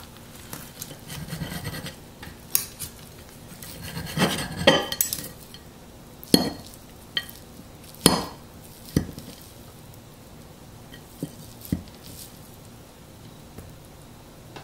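Metal cutlery cutting through a chicken-and-waffle stack and scraping and clinking on a plate: irregular scrapes, a burst of them about four to five seconds in, sharp clinks about six, eight and nine seconds in, then a few lighter taps.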